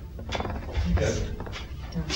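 A few rattling clicks and knocks, with a short "yeah" spoken about a second in.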